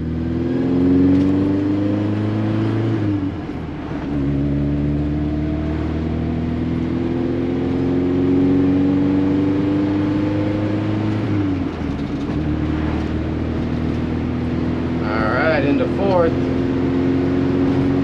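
A 1968 BMW 1600's 1.6-litre four-cylinder engine heard from inside the cabin as the car accelerates through the gears of its four-speed manual. The engine note climbs steadily, drops at a gear change about three seconds in and again near twelve seconds, then climbs again.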